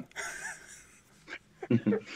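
Men laughing softly over a video call: a breathy laugh trails off, there is a brief silent gap, and the laughter starts up again near the end.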